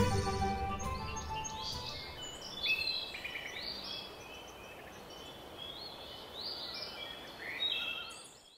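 Closing music fades out over the first two seconds. Birds chirping follow, short high calls repeating until the end.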